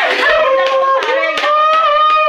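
Hands clapping several times over excited girls' voices squealing in long, high-pitched held notes.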